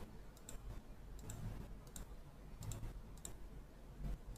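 A few faint, irregular clicks of a computer mouse.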